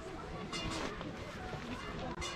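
Footsteps on a woven-mat garden path while walking, with faint voices in the background.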